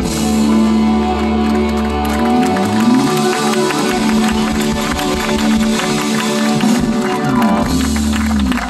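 Live rock band playing the final bars of a song: sustained chords held over a drum kit and cymbals, at full loudness.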